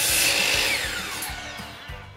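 DeWalt sliding compound miter saw cutting through a pine board, then its motor winding down with a whine that falls steadily in pitch and fades as the blade coasts to a stop.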